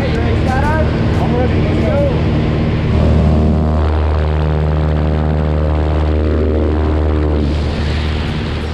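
Small propeller plane's engine drone and rushing air in the cabin with the jump door open, steady and loud, with shouting voices in the first couple of seconds.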